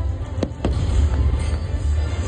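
Aerial fireworks going off: a continuous low rumble of shell bursts, with two sharp cracks about half a second in, over show music.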